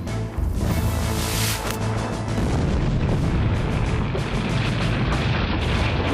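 Quarry blast in granite: a boom about half a second in, then the rumble of blasted rock and dust sliding down the quarry face, under background music.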